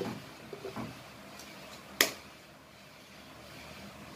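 One sharp tap about two seconds in: a metal fork struck against a raw eggshell to crack it. A few faint handling clicks come before it.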